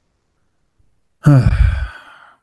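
A man's loud sigh, with falling pitch, about a second in.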